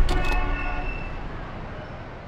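Street-traffic sound effect with a short car horn toot in the first second, over a low rumble that fades out gradually.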